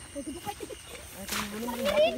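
Voices of people talking and calling, faint at first, with a drawn-out voice rising in pitch during the second half.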